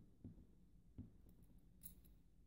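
Near silence with faint handling of a Cisa half euro lock cylinder being taken apart: three soft knocks in the first second and a brief light scrape near the end.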